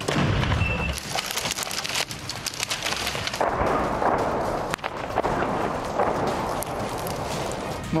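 A 105 mm M119 howitzer fires a shot right at the start, a loud boom with a low rumble for about a second. It is followed by several seconds of continuous noisy rumble scattered with sharp knocks.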